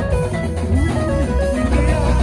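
Loud live band music with a heavy, steady bass line and gliding melodic notes above it.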